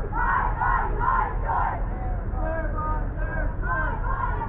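A crowd of marching protesters chanting a slogan: four loud, evenly spaced shouted syllables in the first two seconds, then many overlapping voices.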